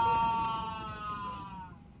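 A man's long, drawn-out wail of pain, slowly falling in pitch and fading away near the end, over the low hum of an airliner cabin. It is the cry of a man poisoned with a Soviet nerve agent.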